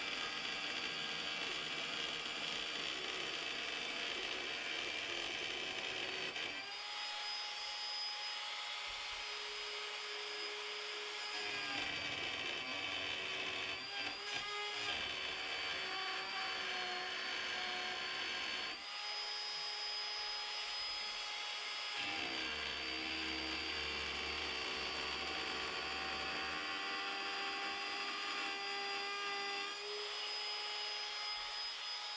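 Ryobi cordless trim router running steadily, its round-over bit cutting a radius along the edge of an aluminium hydrofoil fuselage. The whine shifts in pitch several times as the cut loads and eases along the pass.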